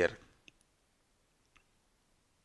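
Two faint computer mouse clicks, about a second apart.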